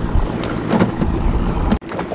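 Boat on open water, with a low rumble and hiss of wind and water and a few light knocks. It cuts off abruptly near the end.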